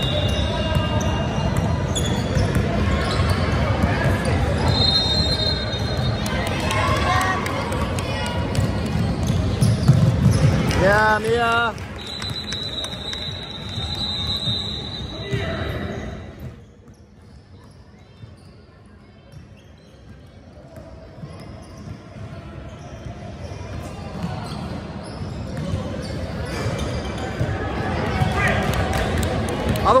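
A basketball being dribbled and bouncing on a hardwood court in a large gym, with players' and spectators' voices around it. There is a loud shout about a third of the way in. The sound drops off for several seconds just past the middle, then builds again.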